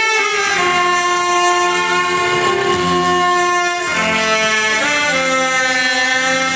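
A trio of saxophones playing a slow melody in long held notes, the pitch changing every second or two.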